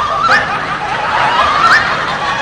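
Laugh track dubbed over the sketch: a snickering giggle that climbs in pitch, repeating in the same shape about every second and a half over continuous background laughter.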